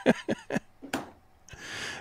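Men chuckling: a few short, breathy laugh pulses in the first second, then a quick breath drawn in near the end.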